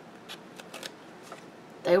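Faint paper rustling and a few light ticks as a planner sticker is handled on its sheet and lifted off with metal tweezers.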